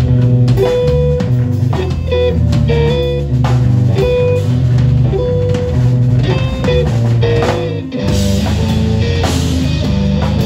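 Live instrumental jazz-metal from an electric guitar, a Bass VI and a drum kit, playing held, distorted-free-standing notes over drum hits. Just before eight seconds in the band breaks for a moment, then comes back in with the cymbals washing brighter.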